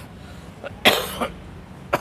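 A man coughs once, a single short burst about a second in.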